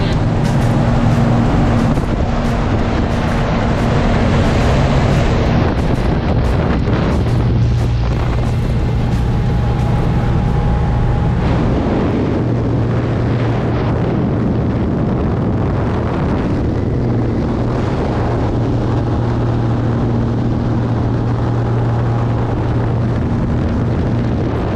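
Steady drone of a small single-engine propeller plane's engine, mixed with rushing wind noise, heard from inside the cabin.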